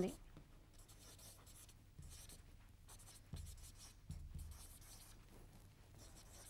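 A marker pen writing on a board: faint, short scratchy strokes come and go, a few of them a little louder, at about two, three and four seconds in.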